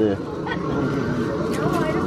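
People talking, with a few short crinkles near the end from hands rummaging in a plastic bag of live lobsters.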